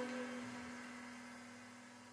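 Last note of a jazz combo's tune ringing out and dying away: one low held tone left sounding as the rest of the band falls silent, fading evenly toward near silence.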